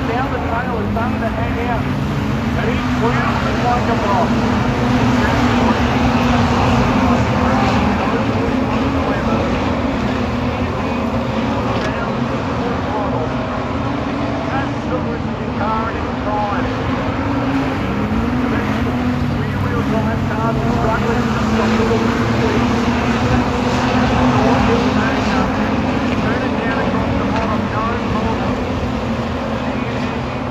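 Several street stock race cars running laps of a dirt speedway oval, engines rising and falling in pitch as they pass, with an indistinct voice over the top.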